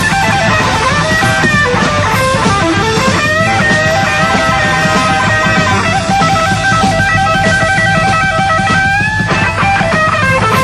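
Live blues-rock band playing loud, an electric guitar lead with long held and bent notes over bass and drums. One note is held steady for about three seconds in the second half.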